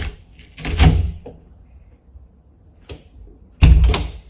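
Interior door worked open and shut by its lever handle, with its hollow rubber frame seal pulling away and making an irritating noise. There are two loud noises, one about a second in and one near the end. The owner thinks the hollow inside the seal's profile causes the noise.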